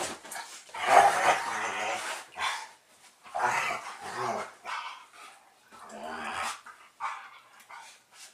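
Two dogs playing together, growling and barking in about four bursts, the loudest about a second in.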